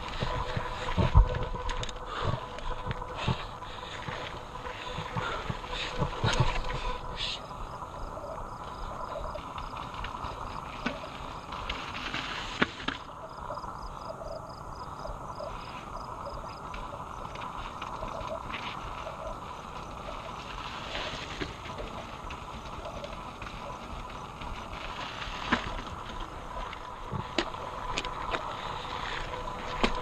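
Giant Trance mountain bike climbing a rocky trail: irregular knocks and rattles as the tyres and frame go over rock steps, over a steady rush of wind and tyre noise, the loudest knock about a second in.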